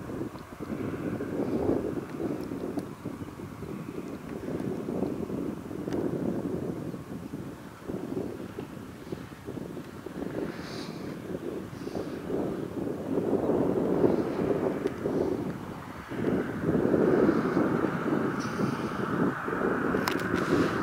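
Gusty wind buffeting the microphone, rising and falling every second or two and strongest in the second half.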